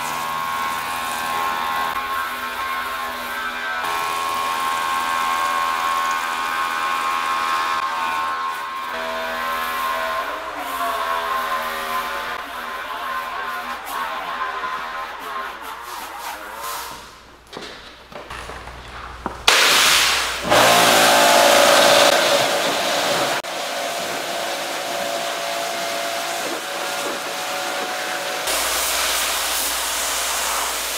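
A small electric motor whines steadily, its pitch wavering slightly, through the first half. After a short dip about two-thirds through, a pressure washer starts jetting water onto the car's body panels, a loud, steady hiss that runs on to the end.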